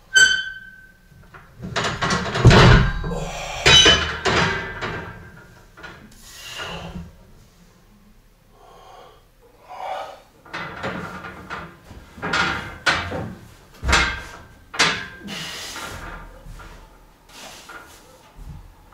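Irregular metal clanks and knocks from a plate-loaded leg-press sled and its power rack being handled and adjusted, with a short metallic ring right at the start.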